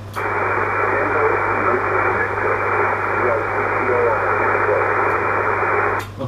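Single-sideband receive audio from an Icom IC-7200 transceiver on 20 metres: a band-limited hiss with a weak, barely readable voice buried in it, the distant station answering through noise and splatter. A steady low hum runs underneath.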